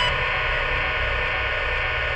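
Dense, steady electronic noise drone: hiss and static layered over held tones, part of the track's soundtrack.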